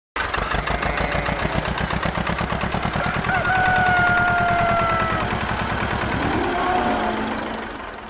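Tractor engine sound effect chugging in a rapid, even rhythm, with a held tone sounding over it for about two seconds in the middle; it fades out at the end.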